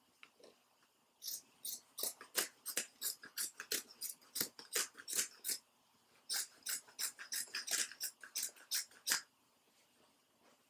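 Scissors snipping through white fabric, short crisp cuts about three a second, with a brief pause partway through.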